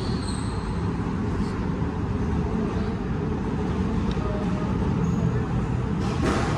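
A steady low rumble of background noise with no ball strikes in it.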